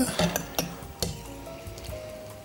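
A fork clinking and scraping against a serving plate, a few short clicks in the first second, under faint background music.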